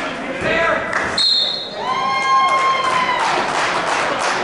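A referee's whistle in a gym: one short, high blast about a second in, stopping the wrestling action. It is followed by a longer, steady, lower pitched tone, over voices shouting in the hall.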